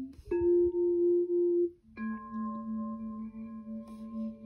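Two recorded singing bowl sounds played one after the other on the Hotmoon Mona Pro sound machine. A higher ringing tone starts a third of a second in and is cut off after about a second and a half. A lower, fuller bowl tone with several overtones starts about two seconds in and rings on.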